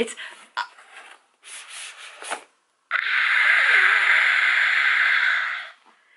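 Cardboard shipping box rustling and scraping as a book is pulled out of it: a few light rustles, then about three seconds of steady, loud scraping that stops just before the end.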